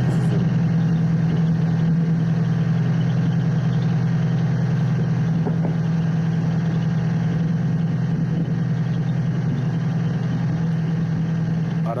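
An engine running steadily at a constant speed, making a loud, unbroken low drone, like idling.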